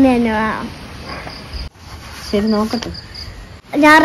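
Faint insect chirping, likely a cricket: short high chirps repeated in quick runs between stretches of talking.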